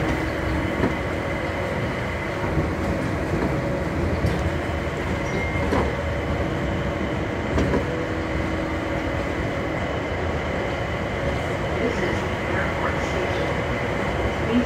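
MIA Mover, a rubber-tyred automated people-mover train, running along its concrete guideway into a station: a steady running rumble with a faint steady whine and a few sharp knocks.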